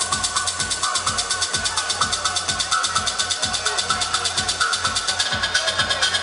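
Electronic dance music from a DJ set played loud over a festival sound system, with a steady kick-drum beat and evenly ticking hi-hats, heard from inside a crowd.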